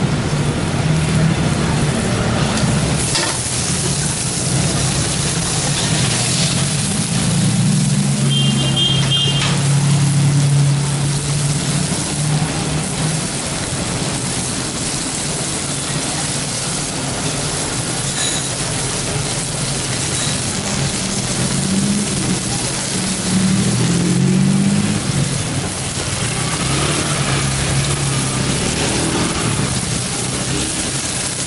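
String beans and green chillies sizzling in a hot steel wok, with a steady hiss and the occasional scrape of a metal spatula being stirred against the pan.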